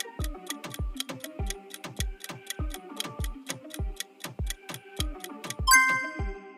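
Countdown timer music: a steady clock-like ticking about four times a second over a kick drum about twice a second and a short plucked melody. Near the end a bright bell-like ding rings out as the timer runs out.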